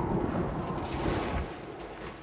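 Cartoon hurricane storm sound effects: dense wind and rain noise over a heavy low rumble, dying away in the last half second.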